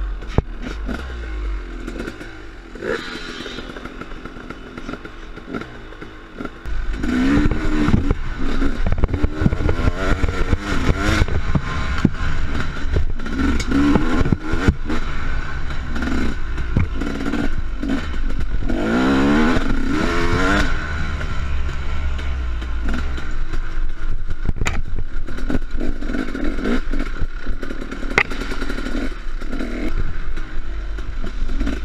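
Two-stroke dirt bike riding a trail, heard from a camera mounted on the bike: the engine runs quieter for the first several seconds, then louder from about seven seconds in, revving up and down repeatedly, with frequent clattering knocks from the bike over the rough ground.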